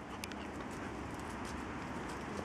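Faint sounds of a Bernese mountain dog moving about on grass close to the microphone, with a few light clicks about a quarter second in.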